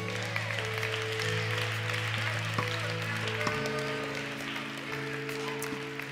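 Congregation applauding over soft background music of sustained chords, which shift to a new chord about halfway through.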